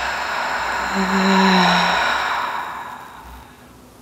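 A woman's long sighing exhale of a cleansing breath, breathy and open-mouthed, with a short low voiced hum about a second in. It trails off and is gone by about three seconds in.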